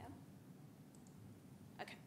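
Near silence: room tone, with one short, sharp click near the end.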